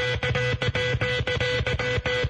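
Electronic music with a fast, even beat, a repeating pulsing note and a pulsing bass line: radio talk-show bumper music between segments.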